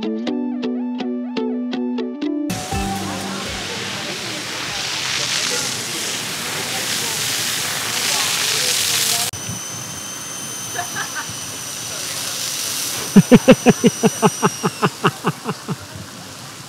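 Water from a fire hose spraying onto paving in a strong, steady hiss, following about two seconds of plucked-string music. Near the end a run of quick laughs, about five a second and fading.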